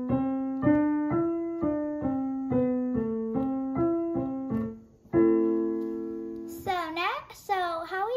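Piano played with both hands: the A minor five-finger scale, C up to E and back down to A, then a broken triad C, E, C, A, one note about every half second. An A minor chord (A, C, E) follows and is held for about a second and a half, then a child's voice starts near the end.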